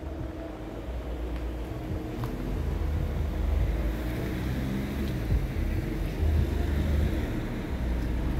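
Low, uneven rumble of outdoor background noise that swells and fades, with no clear single event.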